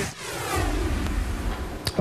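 News-intro whoosh sound effect: a sweeping noisy swish over a low rumble, ending in a short sharp click just before the end.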